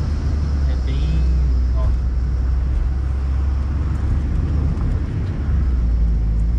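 Steady low engine and road rumble heard inside a small car's cabin while it drives slowly along a winding road.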